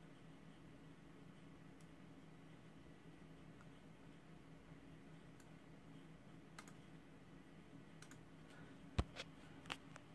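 Near silence with a faint steady hum, then a few computer mouse clicks in the last few seconds, the loudest about nine seconds in.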